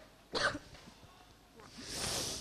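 A woman coughs once, briefly, into a handheld microphone, irritated by tear gas that has reached the area. A soft hiss follows near the end.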